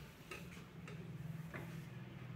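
Haircutting scissors snipping through wet hair: three short, sharp snips, over a steady low hum.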